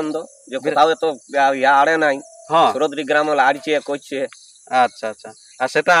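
A man talking close to a handheld microphone, with a steady high-pitched drone of insects behind him throughout.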